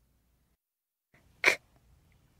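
Silence, then about one and a half seconds in a single short, breathy /k/ sound spoken on its own: the voiceless first sound of 'cub', isolated in a phonics drill.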